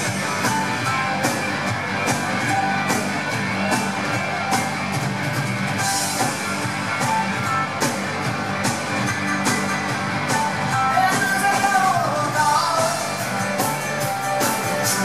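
Live rock band playing loud: strummed electric guitar, drums keeping a steady beat with regular cymbal and snare strokes, and a lead vocal singing over them, as heard from the audience.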